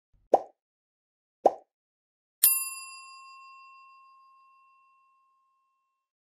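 Sound effects of an animated subscribe end screen: two short pops about a second apart, then a single bell-like ding that rings on and fades away over a couple of seconds.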